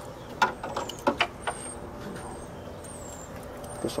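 A few sharp clicks and knocks in the first second and a half, a hard plastic distributor cap and engine parts being handled, over a steady faint hum.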